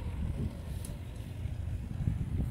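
Wind buffeting the phone's microphone: an uneven, fluttering low rumble with no steady engine note.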